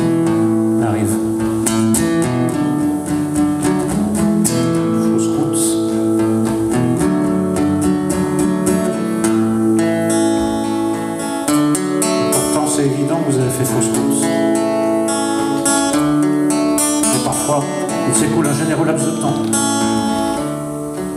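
Acoustic guitar music, chords strummed over sustained notes.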